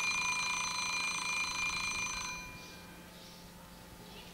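Small mechanical alarm-clock bell ringing with a fast rattle, then cutting off a little over two seconds in. It is the alarm that ends a timed ten-minute session.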